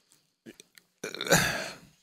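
A man's short, rough vocal sound, not words, about a second in and fading out within a second, after a near-silent pause with a couple of faint clicks.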